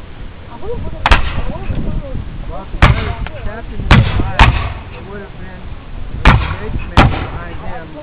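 A line of black-powder infantry muskets firing at will: six single, unevenly spaced shots, two of them in quick succession near the middle and two more close together near the end.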